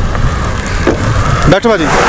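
Strong wind buffeting the microphone in a snowstorm. Near the end a car passes close by, its sound dropping in pitch as it goes past, followed by a rush of hiss.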